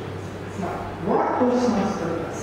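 A man's voice speaking one short, drawn-out word about a second in, over a steady low hum.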